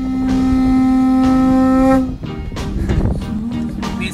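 A single long blown horn note, held steady for about two seconds and sagging slightly in pitch as it stops, followed by rougher, noisier sound.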